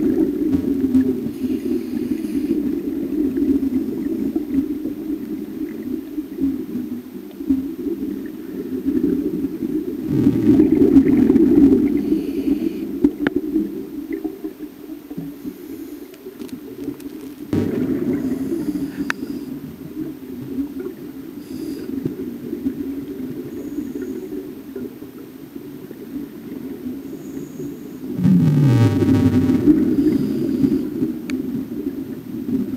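Scuba diving heard underwater through a camera housing: a steady low rushing, with louder bubbling rumbles of exhaled regulator air about ten seconds in, again near eighteen seconds and near the end. The last surge carries a falling low tone.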